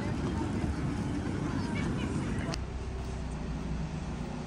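Murmur of a crowd in a busy paved city square, with faint voices over a steady rumble. About two and a half seconds in, a sharp click ends it and a quieter, steady low hum takes over, the room sound of an indoor car park.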